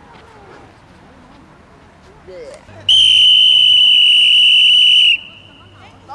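A single loud whistle blast on one steady high note, held for about two seconds, starting about three seconds in.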